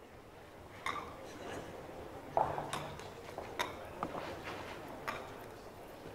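Irregular sharp wooden knocks, about half a dozen, as wooden bolos (skittles) are stood back up in the pin frame of a bolo palma alley. The loudest knock comes about two and a half seconds in, over a faint indoor hall background.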